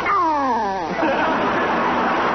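Donald Duck's squawking duck voice, one call sliding down in pitch over about a second, followed by studio audience laughter.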